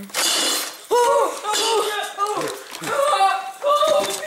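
A short burst of noise at the start, then a child's high-pitched voice calling out in short cries without clear words.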